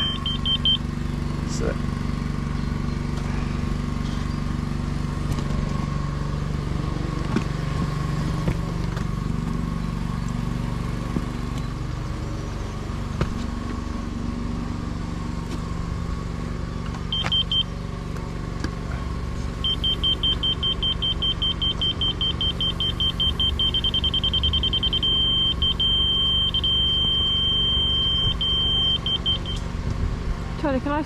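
Laser level receiver beeping as it is held in the laser beam: a short tone at the start and a brief blip in the middle. From about two-thirds of the way in come rapid beeps that merge into a steady tone, the signal that the receiver is close to and then on the level line, and the beeping continues in broken runs until near the end. A steady low hum runs underneath.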